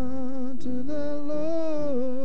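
Church music during the offering: a voice holding long, wavering notes of a slow melody over soft accompaniment.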